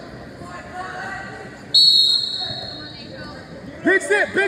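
A sharp whistle blast a little under two seconds in: one high, steady tone, the loudest sound here, that stops after about half a second and fades out in the reverberant gym hall.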